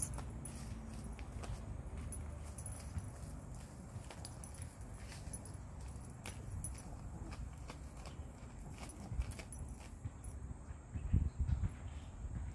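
Faint rustling and scratching of a dog nosing soil and leaves under a shrub as she buries a piece of bread, over a low steady rumble, with a few louder low thumps near the end.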